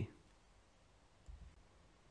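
Near silence in a pause between spoken words. The last of a word trails off at the very start, and a faint low bump comes about a second and a half in.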